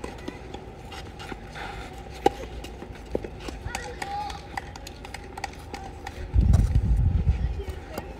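Outdoor tennis-court ambience with faint distant voices and scattered light clicks, then a loud low rumble that starts about six seconds in.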